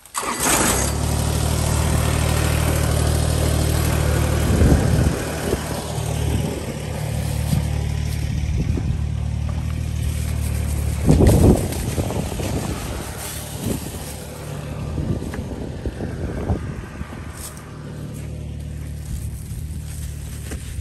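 An engine running steadily at a low, even pitch, starting suddenly at the beginning and fading for a few seconds in the middle before returning, with two louder bursts of noise about five and eleven seconds in.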